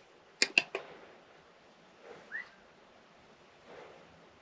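Faint steady hiss of a rattlesnake rattling, hidden in a stone wall, with three sharp clicks about half a second in and a brief whistle-like chirp a little past two seconds in.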